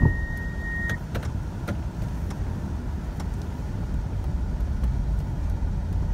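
In-cabin road and engine noise from a 2005 Kia Carnival's V6 on the move, a steady low rumble with a few light clicks. A thin, steady high tone stops about a second in.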